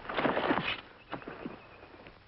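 A scuffle in dry undergrowth: a sudden loud crash of rustling brush and bodies as one man tackles another to the ground, lasting about half a second, followed by a few lighter rustles.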